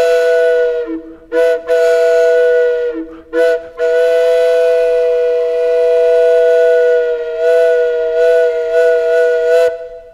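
Flute music: two long notes held together, with two short breaks about one and three seconds in, fading out near the end.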